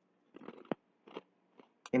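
Faint mouth clicks and lip smacks from the narrator between sentences, a handful of small clicks, before speech resumes at the very end.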